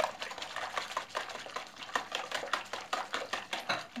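A wire whisk beating liquid egg-and-milk crepe batter in a plastic bowl. It gives rapid, uneven clicking and tapping as the wires strike the bowl.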